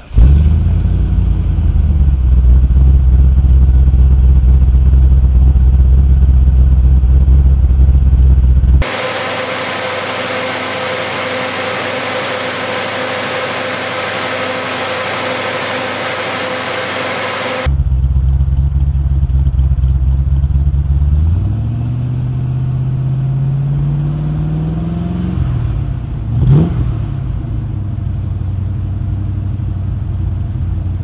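Hemi crate V8 in a 1969 Dodge Coronet R/T firing up right at the start and settling into a steady idle. Mid-way it is heard close up from the engine bay, with more clatter and less low rumble. Later it is given one slow rev that rises and falls back, then a quick sharp blip of the throttle.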